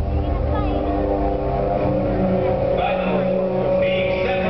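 Show audio played over an arena's sound system: a low rumble with sustained tones that hold and shift slowly.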